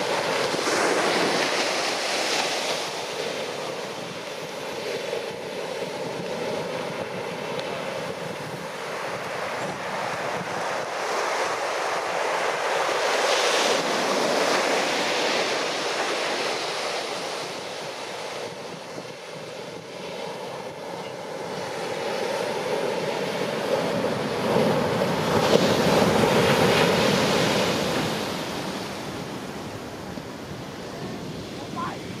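Ocean waves breaking in a heavy shorebreak: a continuous wash of surf that swells three times into louder crashes, about a second in, around the middle and again a few seconds before the end.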